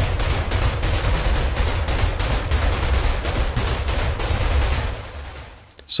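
Synthesized noise percussion patch from the Zebra 2 synth (Dark Zebra add-on): mixed white and pink noise, filtered and distorted, played as a rapid run of punchy hits. The EQ gives the bass a moderate boost and takes a little off the high end. The hits fade out about five seconds in.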